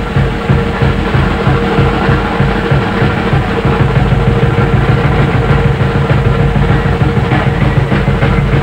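Jazz drum kit played fast: a dense, unbroken run of strokes on snare, toms and bass drum, with cymbals ringing over it.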